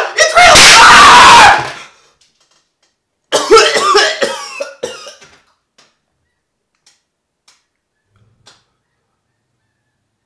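A very loud burst lasting about a second and a half as a firecracker goes off on a tabletop. From about three seconds in, a man coughs and clears his throat in the smoke, followed by a few faint clicks.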